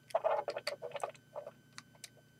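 Plastic pieces of a Lego Bionicle Rahkshi figure clicking and clattering as its arms and staff are handled: a run of light ticks, busiest in the first second.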